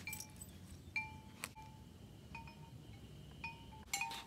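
Wind chimes ringing faintly and irregularly, a handful of light strikes at a few different pitches, each ringing on briefly.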